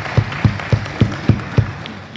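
Church audience applauding. One loud, steady clap close by stands out at about three or four a second and stops near the end.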